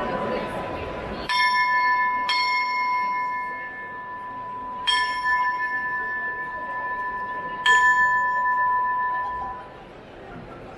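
Hand bell on the front of a Málaga procession throne struck four times, two strikes a second apart and then two more spaced out, each ringing clearly and fading slowly: the bell signal to the throne bearers.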